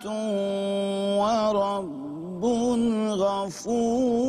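A male voice recites a Quran verse in melodic chanted recitation (tilawat), holding long notes with wavering ornaments. About two seconds in, the voice drops lower and softer before rising again on a new phrase.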